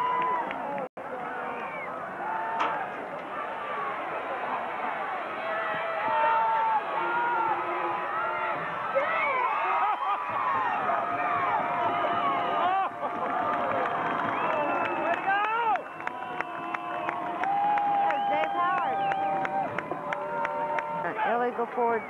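Football crowd in the stands, many voices overlapping in shouts and cheers, with some long held calls in the second half. The sound cuts out for an instant about a second in.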